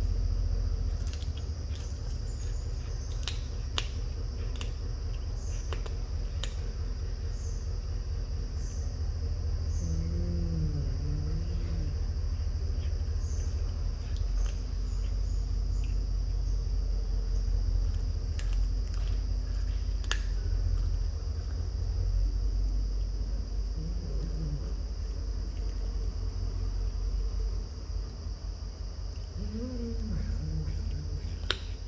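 A cat chewing a chicken foot: scattered sharp crunches of bone and gristle, over a steady low hum.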